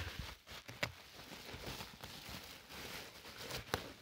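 Faint rustling and crinkling of plastic bubble wrap being handled and pulled from a cardboard box, with a few soft taps.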